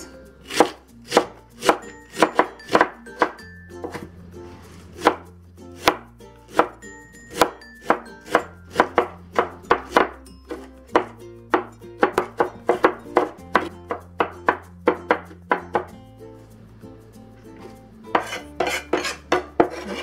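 Cleaver mincing napa cabbage on a wooden cutting board: sharp knocks of the blade on the board, mostly two or three a second, thinning out briefly near the end before a quicker run.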